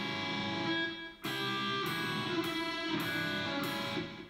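Electric guitar playing two-note double stops on the B and high E strings, struck one after another as the B-string note walks down while the high E stays on top, each pair left to ring before the next.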